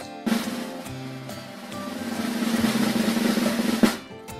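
A snare drum roll played over background music, starting shortly after the beginning, swelling steadily louder and ending on a sharp hit just before the end.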